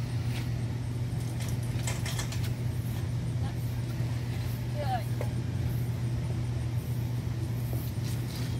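A steady low mechanical hum, like a motor running, with a few light clicks.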